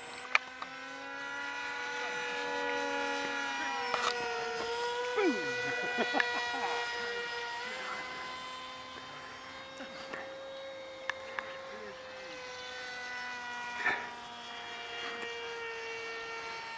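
Radio-controlled model plane's motor and propeller flying overhead: a steady buzzing whine whose pitch shifts a little with the throttle, swelling and fading as the plane's distance changes.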